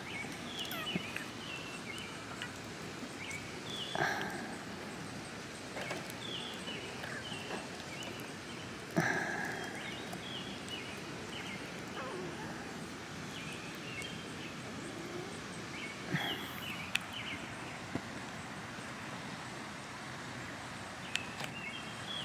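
Outdoor ambience: steady background noise with birds chirping on and off, and a few brief clicks and knocks, about four, nine and sixteen seconds in, as a plastic action figure is handled on a wooden table.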